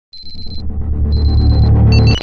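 Electronic logo-intro sound effect: a low drone that swells steadily louder, with two high electronic beeps of about half a second each, one at the start and one about a second in.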